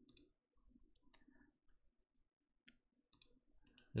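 Faint computer mouse clicks over near silence: a few scattered single clicks, then a quick run of clicks near the end.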